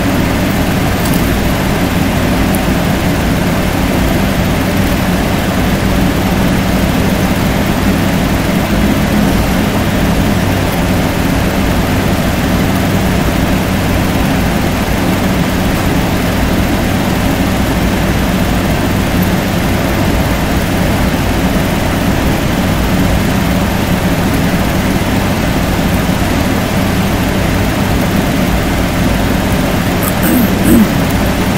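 A steady machine hum with a low drone, unchanging throughout.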